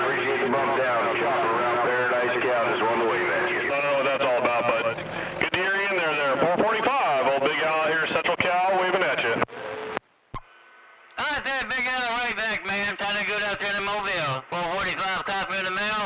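Men's voices talking over a CB radio, heard through the receiver's speaker. About ten seconds in the talk breaks off for a moment under a faint steady tone, then a clearer voice comes in.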